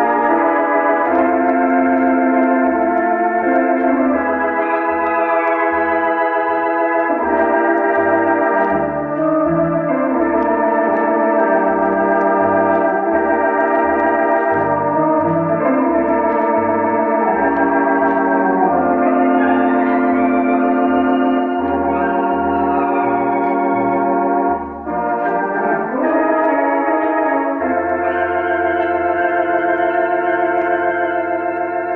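Artisan electronic theatre organ playing a ballad: sustained chords with a wavering tremulant over a line of separate short bass notes. Near the end it settles onto a long held bass note.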